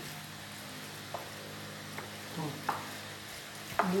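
Wooden spoon spreading and pressing a moist shredded vegetable mixture in a glass baking dish: soft wet scraping with a few light clicks of the spoon, over a steady low hum.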